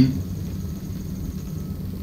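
Steady low rumble of background noise in a room, with no distinct events.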